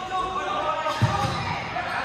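A futsal ball thudding a few times on a hardwood sports-hall floor as it is kicked and passed, about a second in, with players' distant shouts echoing in the hall.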